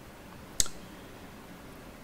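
A single short, sharp click about half a second in, against quiet room tone.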